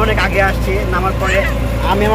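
Voices over the steady low drone of a small vehicle's engine running, heard from inside an auto-rickshaw's passenger cab.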